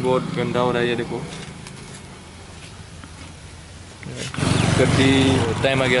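A man's voice in the first second, then a low steady hum in a pause. About four seconds in it gives way abruptly to a louder low rumble, like wind on the microphone, and more speech near the end.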